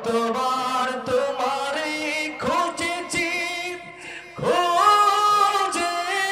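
A young man's unaccompanied solo voice chanting melodically in long held notes with ornamented turns, rising to a higher, louder phrase near the end.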